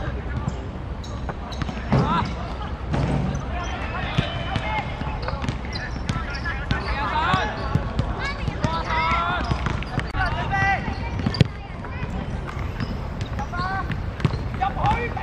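Footballers shouting and calling to each other across an outdoor pitch, several voices overlapping, with thuds of the ball being kicked; one sharp kick about eleven seconds in is the loudest sound.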